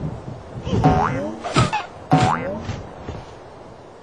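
Two cartoon spring 'boing' sound effects, about a second and a half apart, with a sharp hit between them.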